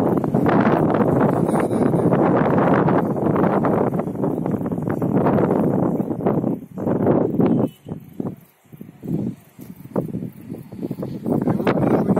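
Wind buffeting the phone's microphone: a loud, rough rush that is steady for about the first six seconds, then comes in gusts with brief lulls.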